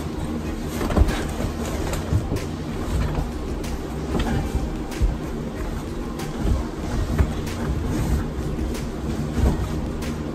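Irregular thumps and knocks as a fabric duffel bag is pushed and shoved into a closet, over a steady low hum.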